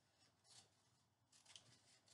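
Faint snips of scissors cutting construction paper: a few short cuts.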